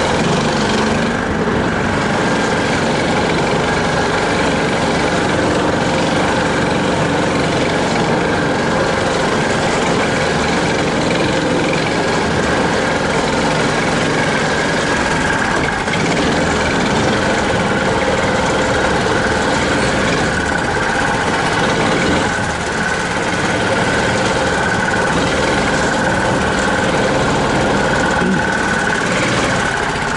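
Engine of a homemade articulated low-pressure-tyre all-terrain vehicle (karakat) running steadily under way, with a steady high whine above the engine note.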